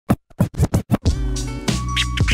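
Hip hop intro music: a quick run of short turntable scratches in the first second, then a beat with held bass and synth notes comes in about a second in.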